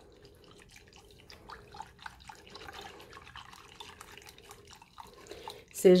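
Silicone whisk beating milk, cream and chocolate powder in an aluminium pot: soft, quick liquid splashing with many light clicks of the whisk against the pot.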